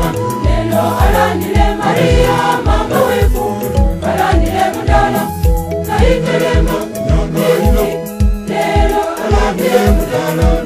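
Church choir song: a choir singing with instrumental backing over a steady bass beat of about two beats a second.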